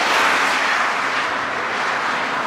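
Highway traffic going by close at hand: a passing vehicle's tyre and air noise, loudest at the start and slowly fading away.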